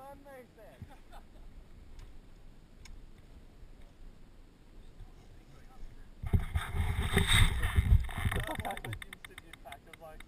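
A dirt bike crashing into a tree in the scrub: a loud, rough burst of crashing noise and engine sound starts about six seconds in, lasts about three seconds and fades away.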